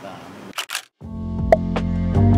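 A camera shutter clicking twice in quick succession about half a second in. After a brief silence, background music with plucked notes starts about a second in.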